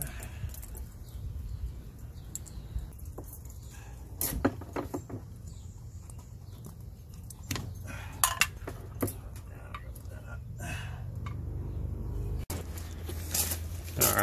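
Metal clinks and knocks of a hydraulic power-trim ram and its bolt being handled and fitted into an outboard's transom bracket: a few scattered short taps over a steady low rumble.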